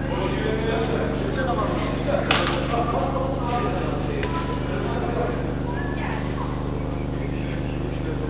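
Indoor five-a-side football game under a steady electrical hum, with faint, echoing shouts of players and one sharp smack of the football about two seconds in.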